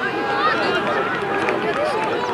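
Several voices talking and calling out at once, overlapping so that no words are clear.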